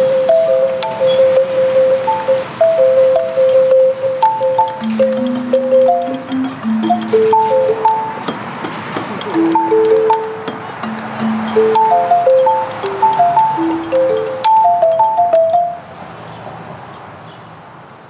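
Outdoor street metallophone of tuned metal tubes struck with two mallets, playing a simple melody one note at a time with short ringing notes. The playing stops near the end, leaving a quieter background.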